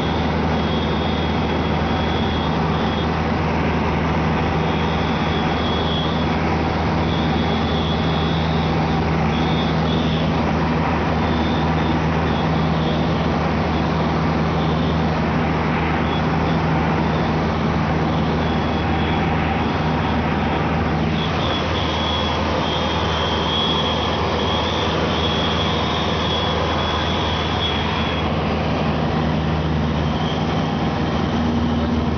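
Cessna 172RG's engine and propeller running steadily in flight, heard from inside the cabin with wind rush.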